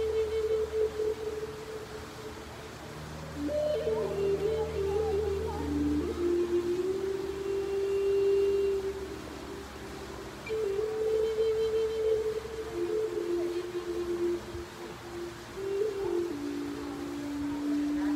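Native American-style flute playing a slow melody of long held notes that step up and down in pitch, over a low steady drone that fades out partway through.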